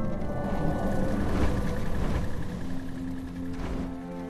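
Rushing, rumbling whoosh of a small winged flying craft sweeping past, with several swooshes, the strongest about a second and a half in and again near the end, over a film score of held notes.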